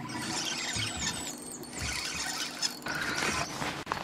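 Spinning fishing reel's drag giving line with a high squealing whine as a hooked fish runs.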